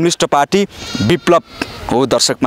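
A man speaking in Nepali to camera, with a brief quavering bleat from livestock in the background about a second in.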